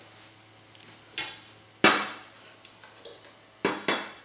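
Sharp knocks of a blender jug and glassware set against the tabletop, four in all, the loudest about two seconds in and two quick ones near the end.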